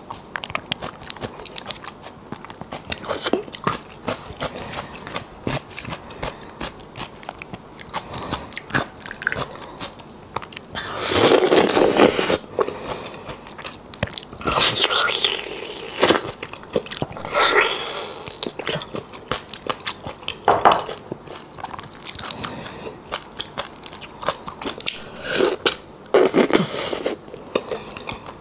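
Close-miked eating sounds of spicy beef bone marrow: wet chewing and mouth clicks, broken by several loud sucking slurps as marrow is drawn from the bone. The longest slurp comes about eleven seconds in.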